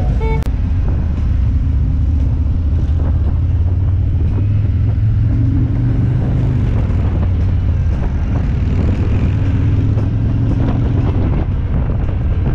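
Harley-Davidson touring motorcycle's V-twin engine pulling away from a stop and riding on, with its deep, steady note rising as it picks up speed a few seconds in and again later.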